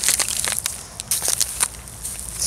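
Footsteps through dead, dry reeds and grass: a run of irregular sharp crackles and crunches as the stalks are trodden down.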